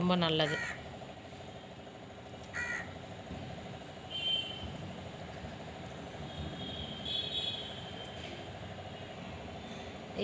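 A crow cawing in the background, with short calls about two and a half seconds in, again around four seconds and near seven seconds, over a steady faint hum.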